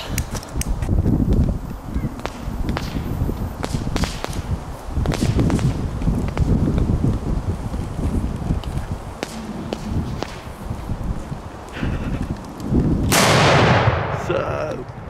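A large firecracker going off near the end with one loud bang that rings on for about a second, after several seconds of low rustling noise and scattered clicks.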